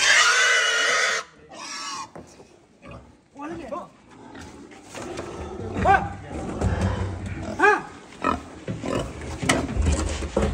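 Domestic pig squealing loudly while being driven with a stick. The squeal cuts off about a second in and is followed by short grunting calls.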